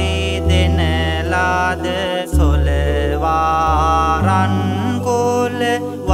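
Sinhala Buddhist devotional chant music: a wavering, chant-like melodic line over sustained low keyboard bass notes that shift every second or two, with a brief break just after two seconds in.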